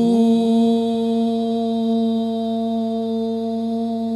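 A male voice holds one long, steady note in Sufi devotional singing, rising into it at the start.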